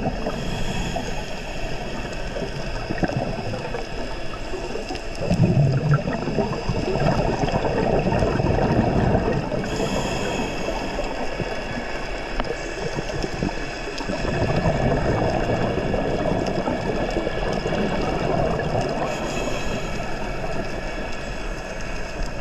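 Underwater sound of scuba breathing: exhaled bubbles gurgling and rushing in surges every few seconds, over a faint steady high hum.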